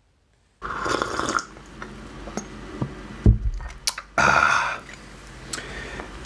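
Sipping a hot drink from a glass mug, with a short slurp about a second in, then the mug set down on the desk with one knock a little over three seconds in, followed by a breathy exhale.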